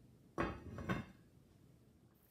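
Lid set onto a cast-iron Dutch oven, clanking twice in quick succession.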